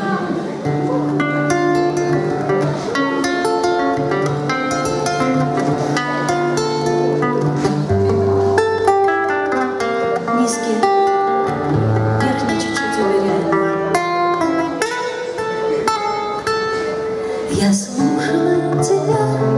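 Nylon-string classical guitar played fingerstyle: picked melody notes over sustained bass notes, the instrumental introduction to a song.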